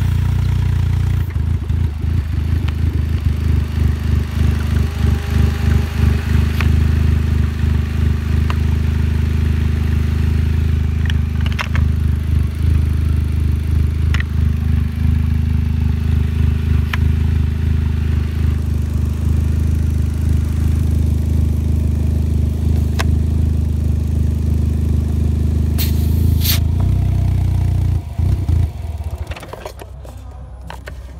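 GM Ecotec car engine idling steadily with the hood open, its level and pitch not changing. Near the end the running drops away and it goes much quieter.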